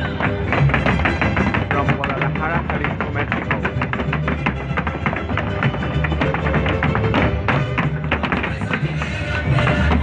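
Mexican folk dance music for a Jalisco folklórico dance, with many quick, sharp taps of zapateado footwork on the stage floor.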